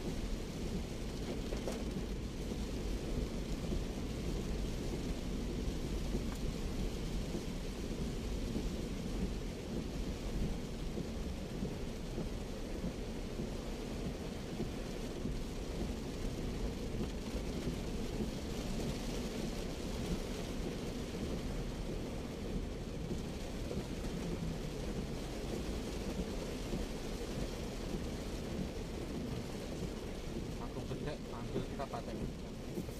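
Steady in-cabin rumble of a Daihatsu Terios driving on a wet road in the rain: a low road and engine drone with the hiss of rain and spray on the body and windscreen.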